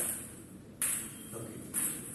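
Table tennis bat striking a ball held on a spring-wire trainer (a bent coat-hanger wire): three sharp hits a little under a second apart, as forehand strokes are played one after another.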